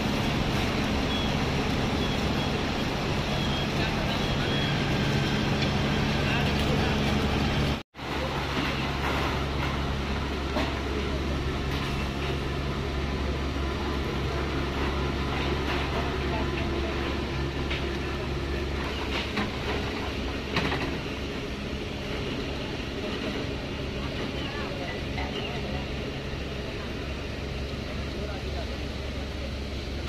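Steady mechanical hum of sugar-factory cane-handling machinery. The sound breaks off briefly about eight seconds in, then a deeper steady engine drone runs on.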